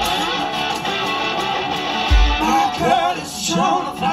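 Live acoustic set: a resonator guitar played over an amplified PA, with a wavering singing voice coming in over it about two and a half seconds in. A low thump sounds just after two seconds.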